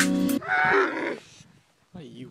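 Electronic music with held notes and sharp strikes cuts off suddenly, and a camel calls once, a rough call of under a second that then fades away.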